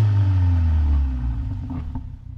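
Car engine running with a low, steady note that sinks slowly in pitch and fades away in the second half.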